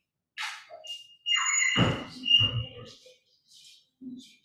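Room noises: two brief rustles, then a squeak over two low thumps.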